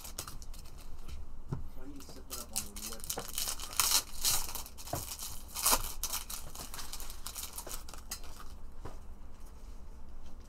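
Foil trading-card pack wrappers from a Panini Prizm football hobby box being handled and torn open, crinkling and rustling. The loudest tearing bursts come about four seconds in and again just before six seconds.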